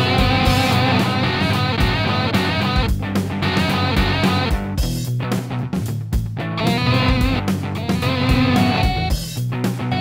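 Electric guitar music played back from Maschine: a guitar jam track with a beat, with slices of a live-sampled guitar phrase triggered over it. The music thins out briefly about halfway through and again shortly before the end.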